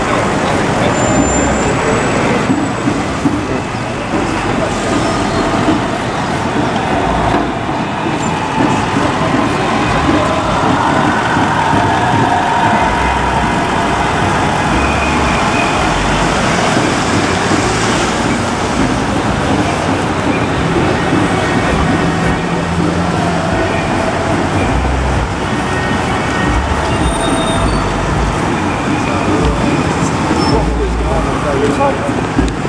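Busy downtown street traffic: cars, vans and a police pickup driving past close by, engines and tyres running steadily. A faint tone rises and falls slowly in the middle stretch.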